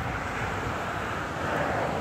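Distant engine noise from passing traffic: a steady rumble that grows slightly louder near the end.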